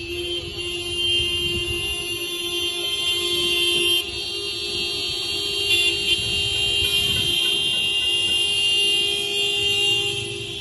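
Many vehicle horns sounding at once in long, overlapping blasts over the low rumble of traffic from a motorised convoy.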